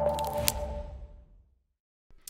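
The end of an electronic logo sting: its held tones and one last click ring out and fade to silence a little past halfway through.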